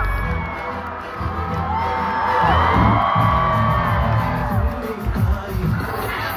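Loud live concert music through a large PA system, with a big crowd cheering and screaming over it.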